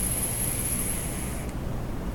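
A long draw on an e-cigarette mod as it fires, with a thin high whine that stops about one and a half seconds in, over a steady low background hum.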